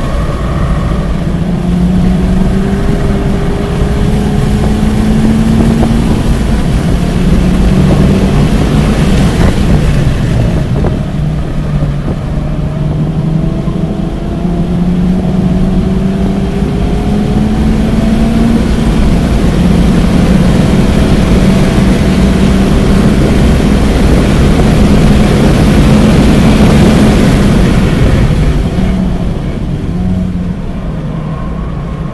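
2023 Honda Civic Type R's stock turbocharged 2.0-litre four-cylinder under hard acceleration on track, its pitch rising in several long runs broken by gear changes, over steady tyre and road noise. Near the end it eases off as the car slows for a corner.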